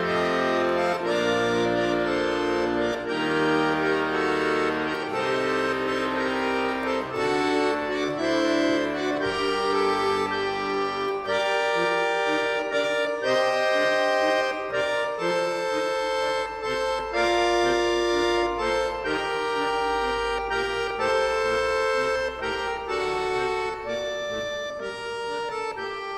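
Accordion music played live: held chords and a melody line of sustained reedy notes, with the low bass notes thinning out about ten seconds in.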